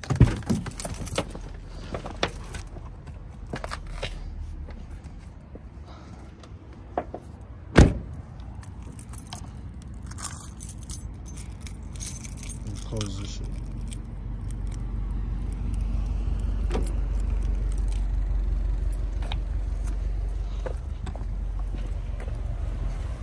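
Keys jangling amid clicks and handling rattles, with one loud thump about eight seconds in. A low, steady rumble builds through the second half.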